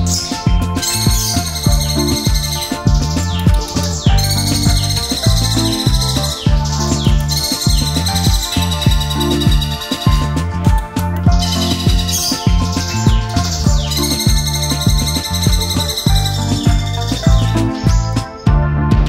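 Background music with a steady beat, with caged birds chirping over it in several long runs of rapid, high trilling notes.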